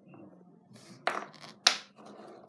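Small wooden toy blocks clacking together as they are set on a stacked tower: a few sharp clacks, the loudest two about a second in and a little later.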